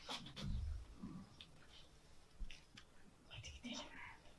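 Several people whispering together, faint and tense, with a low thump about half a second in.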